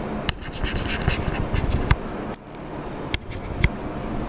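A stylus scratching and tapping on a digital writing surface in short, irregular strokes, with a brief pause in the middle.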